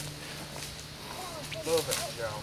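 Faint voices of people talking at a distance, over a low steady hum.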